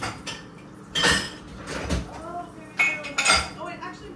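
Dishes and cutlery clattering as they are washed and handled at a kitchen sink: a string of clinks and knocks, the loudest about a second in and again near the end.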